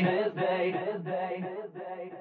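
Electronic dance track's synth part fading out: a held chord pulsing about three times a second, getting steadily quieter.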